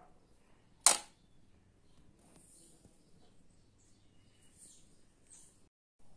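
A single sharp click about a second in: a plastic Lego piston assembly set down on a stainless-steel kitchen scale. Faint handling rustles follow.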